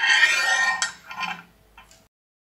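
Metal parts of a transfer pump's steel piston rod clinking and scraping as they are handled and set down: a loud ringing scrape in the first second, then two lighter clinks.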